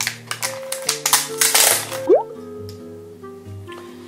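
Plastic blister packaging of a nail-glitter set crackling and tearing as it is opened by hand, in several loud bursts over the first two seconds, over steady background music.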